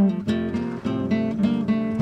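Background music: an acoustic guitar playing a run of plucked notes and chords.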